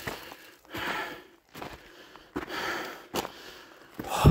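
A hiker breathing hard, about one loud breath a second, with footsteps crunching on a sandy, stony trail.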